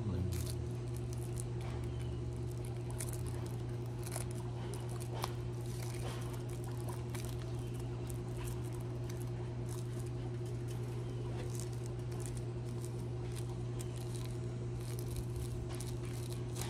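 Rolling paper and ground cannabis rolled between the fingers into a joint: soft, scattered crinkles and small taps of paper. Under it runs a steady low hum.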